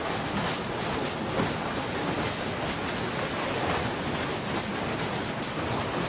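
Waste sorting line machinery running: conveyor belts and sorting equipment make a steady mechanical noise with a continual light rattle and clatter of paper and packaging being carried along.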